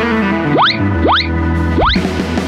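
Upbeat background music with three quick rising swoop sound effects, evenly spaced about half a second apart, playing over an animated title card.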